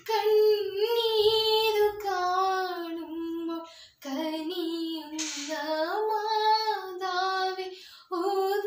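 A young woman singing solo with no accompaniment: two long, slowly gliding phrases, with a brief breath pause about four seconds in.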